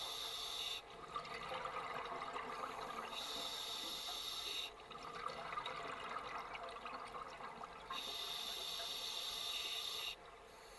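Scuba diver breathing through a regulator underwater: a hissing inhalation about every four seconds, with bubbling exhalations in between.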